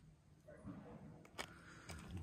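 Near silence: faint low rustling with a couple of soft clicks, one about the middle and one near the end.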